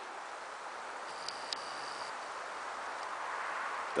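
Steady, quiet outdoor hiss of woodland ambience. A little over a second in come two light clicks and a faint high whine lasting about a second.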